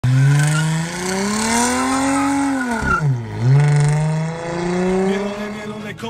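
Dodge Challenger's engine revving through its exhaust: the pitch climbs for about two and a half seconds, drops sharply around three seconds in, then holds and climbs again.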